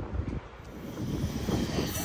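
Wind buffeting the microphone over the rumble of an approaching electric-locomotive-hauled passenger train, growing louder from about a second in.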